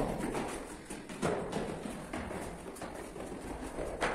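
Footsteps on the concrete steps of an apartment stairwell as a boy comes down the stairs: a few irregular thuds.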